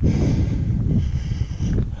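Wind buffeting the camera's microphone, an uneven low rumble that rises and falls.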